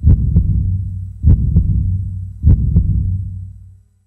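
Heartbeat sound effect: three double thumps, lub-dub, about 1.2 s apart over a low steady drone that fades out near the end.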